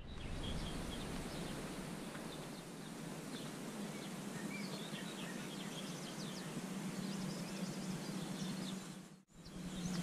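Quiet outdoor ambience with small birds chirping and twittering in short, scattered calls over a steady low hum. The sound drops out briefly about nine seconds in, then resumes.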